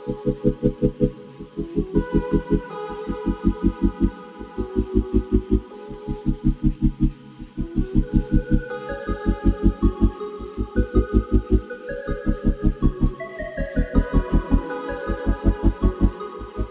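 Background music: a fast, even pulsing beat of about six or seven pulses a second, in short runs, under a slow melody of held notes that step up and down.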